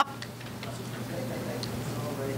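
A short spoken 'Oh' right at the start, then quiet meeting-hall room tone: a steady low hum with a few faint clicks and faint murmuring.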